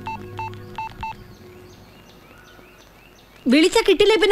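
A mobile phone giving four short, same-pitched electronic beeps in the first second, as a call ends. About three and a half seconds in, a loud voice starts.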